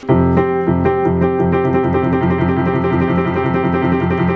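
Electronic keyboard played with a piano sound: low notes held under quick repeated notes higher up. The keyboard has no sustain pedal.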